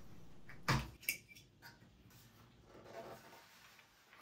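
Plastic shipping caps being pulled off a 3D printer's Z-axis frame: a sharp click just under a second in, a second click a moment later, then faint handling sounds.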